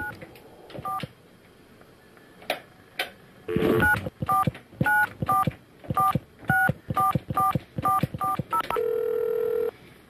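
Touch-tone telephone keypad being dialed: a couple of single key beeps, then a quick run of over a dozen short two-note beeps, one per key press, ending in a steady tone of about a second.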